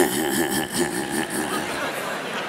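A loud burst of laughter at the start that fades over about a second and a half.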